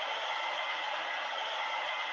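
Steady outdoor background ambience with a few faint held tones from a textbook video's street scene, heard through a video call's shared audio.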